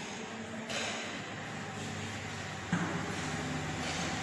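Chalk scratching and tapping on a blackboard as a line of words is handwritten, over a low steady background hum.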